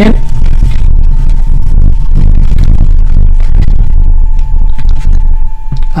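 Camera tripod being cranked up and moved, with scraping and handling noise on the microphone. Under it runs a steady low rumble with a thin constant whine from the powered-up boring mill.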